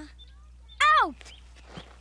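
A short, loud vocal cry about a second in, sliding steeply down in pitch, in the manner of a cartoon character's exclamation.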